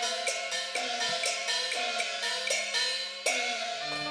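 Instrumental interlude of a Cantonese opera accompaniment band: a run of percussion strikes with cymbals over sustained melody notes, some of which slide down in pitch. There is no singing.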